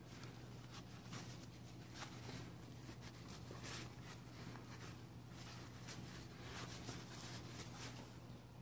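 Faint, scratchy rubbing of a cloth wiping crud off the small plastic main gear of a Roomba side brush motor, in short irregular strokes. A low steady hum runs underneath.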